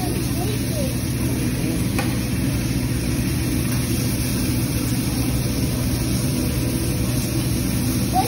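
Steak and vegetables sizzling on a teppanyaki flat-top griddle under a steady low hum, with faint room chatter; a light click about two seconds in.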